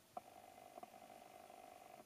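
Near silence: faint room tone with a quiet steady hum and a light click or two.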